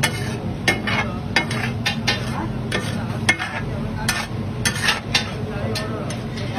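Tava pulao masala sizzling on a large flat iron tava, with frequent irregular sharp clicks and scrapes of metal utensils on the griddle over a steady low hum.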